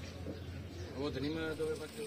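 Indistinct voices of people nearby, clearest about a second in, over a steady low hum.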